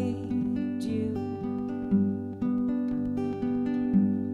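Acoustic guitars playing an instrumental passage without singing: picked notes ringing and overlapping.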